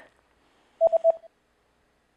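Three quick electronic beeps at one pitch, about a second in: a sound-effect cue that goes with the on-screen pause for the viewer to answer.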